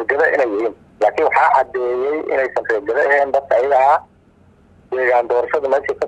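Speech only: a man talking in Somali, in phrases with short pauses.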